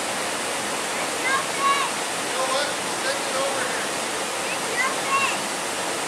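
Brook water running with a steady, even hiss. Brief high-pitched voices sound over it a few times.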